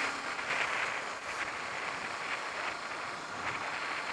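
Steady rush of wind and road noise from a Honda CBF125 motorcycle under way, with wind buffeting the microphone.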